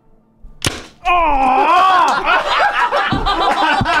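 Paintball gun firing a nylon ball: one sharp crack a little over half a second in. A long, loud cry of 'Oh!' and laughter follow.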